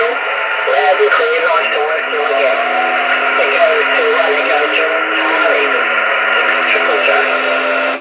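Single-sideband voice received through the RS-44 amateur radio satellite: a distant operator talking, thin and narrow-band over steady hiss, with a low steady whistle joining about two seconds in; the received signal cuts off abruptly at the end.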